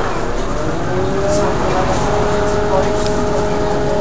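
Bus running along the road, heard inside the passenger cabin: steady engine and road noise with a whine that rises slightly in pitch about a second in, then holds.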